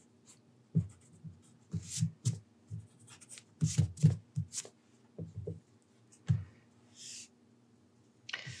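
Pencil and eraser working on drawing paper: irregular short scratchy strokes and rubs, busiest about two and four seconds in, with soft knocks of hands on the paper.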